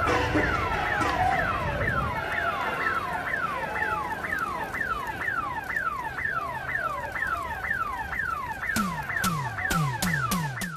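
Car alarm going off after a gas explosion, a falling whoop repeated about two to three times a second, over a low rumble that dies away about two seconds in. Near the end, drum beats come in.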